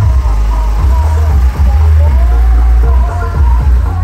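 Loud music played through a large mobile sound system, with heavy booming bass and a wavering melodic line above it.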